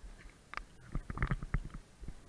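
A cluster of muffled, irregular knocks and thumps with a low rumble, as of wind and water buffeting a camera's microphone, starting about half a second in and dying away after about a second and a half.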